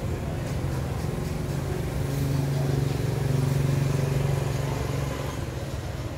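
A motor vehicle engine running close by, a steady low hum that grows louder in the middle and eases off near the end, like a vehicle passing.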